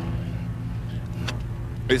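A steady low background hum during a pause in speech, with one faint click a little past the middle.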